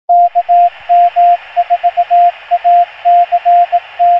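Morse code tone near 700 Hz, keyed quickly in dots and dashes over a band of radio static hiss. The dots and dashes spell the call sign KM4ACK: K, M, 4, A and C fall inside, and the final K begins at the very end.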